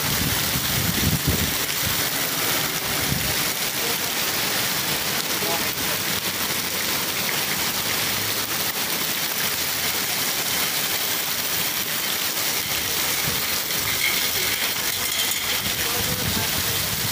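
Heavy rain pouring down onto a flooded street, a steady hiss of drops splashing into standing water.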